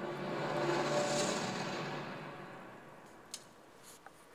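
Closing swell of a film trailer's soundtrack heard over a room's loudspeakers: a rushing noise that builds, peaks about a second in, then fades away over the next two seconds, followed by one short click near the end.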